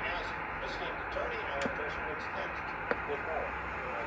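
Ten-Tec Argonaut V HF transceiver being switched on: a sharp click about one and a half seconds in and a fainter click near three seconds, over a steady background hiss.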